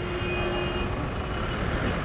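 Road traffic in a jam: car, bus and truck engines running together as a steady, even noise.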